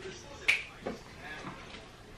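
A single sharp snap about half a second in, followed by a few faint low murmurs.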